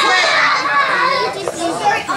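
Several children's voices talking and calling out at once, overlapping into a steady chatter.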